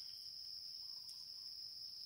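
Faint, steady high-pitched chorus of insects, an unbroken drone with no breaks or pulses.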